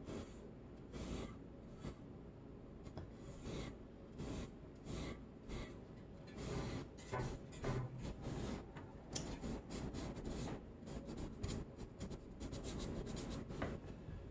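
Paintbrush bristles brushing paint onto a wooden birdhouse, a run of short scratchy strokes that come faster in the second half.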